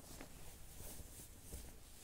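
Quiet room tone: a faint low rumble with soft hiss and a few faint small ticks.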